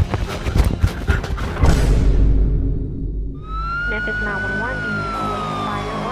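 A siren wails: one long tone starting about three seconds in, rising briefly and then slowly falling, over background music.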